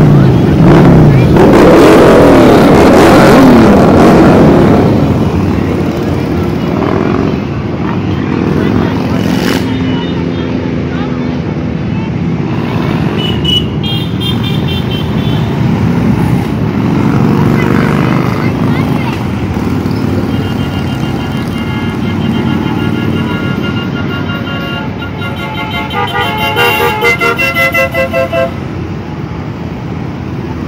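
A procession of cruiser and touring motorcycles riding past one after another, their engines loudest in the first few seconds as the nearest bikes go by. A steady run of engine noise follows, with horns sounding several times and a series of quick honks near the end.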